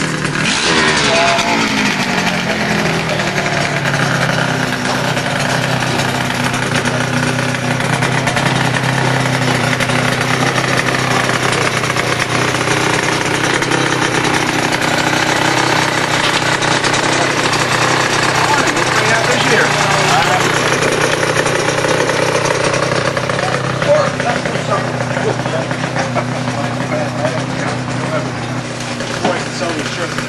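A motorcycle engine runs steadily, its pitch falling over the first couple of seconds as a ridden bike passes close. Voices are heard in the background.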